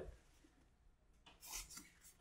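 Faint rubbing of a hardback book being handled and lifted out of a cardboard box, with a brief scrape about a second and a half in, otherwise near silence.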